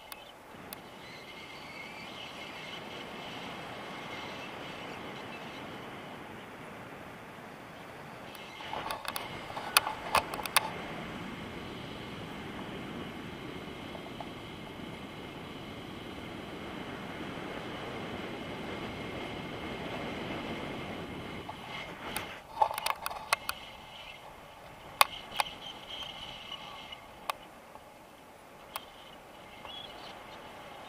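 Airflow rushing over an action camera's microphone during a tandem paraglider flight, swelling and easing. Two clusters of sharp clicks and knocks break in about a third of the way in and again about two-thirds through, from the camera or its mount being handled.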